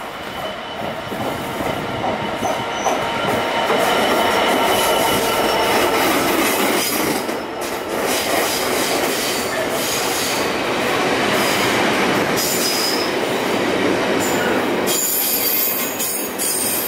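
Container freight train running through a station behind a diesel locomotive. The sound builds over the first few seconds as the train nears, then holds as a steady rumble and rattle of wagon wheels on the rails, with a thin squeal from the wheels.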